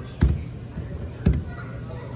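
Two lemons set down one after the other on a rubber checkout conveyor belt, each landing with a dull thump, about a second apart.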